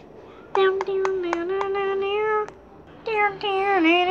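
A child singing two long held notes without words, each about two seconds, the pitch wavering slightly and dipping near the end. Several light clicks fall during the notes.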